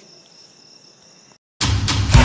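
Faint background hiss with a steady high-pitched tone, which cuts to a moment of silence about one and a half seconds in. Loud background music with plucked strings then starts suddenly.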